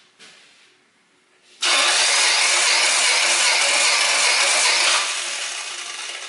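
Toyota 4A-FE 16-valve four-cylinder engine cranked on its starter motor with the spark plugs out, a steady fast whirr for about three seconds. It starts about one and a half seconds in and fades away near the end. This is the cranking for a wet compression test, with oil added to the cylinder, on a hot engine.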